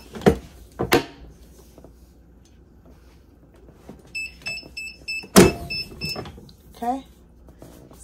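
Clamshell heat press pre-pressing a cotton T-shirt: two clunks as the press is shut, then its timer beeping in a quick run of high beeps, about four a second, when the press time is up. A loud clunk partway through the beeping as the press is opened.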